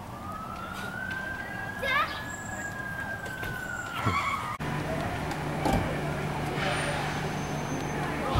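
Emergency vehicle siren wailing in one slow sweep, rising and then falling in pitch, as a fire engine arrives. It cuts off abruptly about halfway through, and a steady low engine hum continues after.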